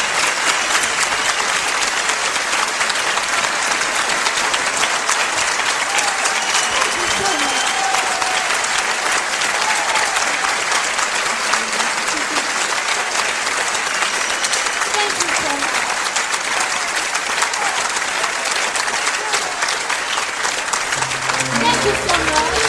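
Live audience applauding steadily, with a few voices calling out over the clapping; the band starts playing again right at the end.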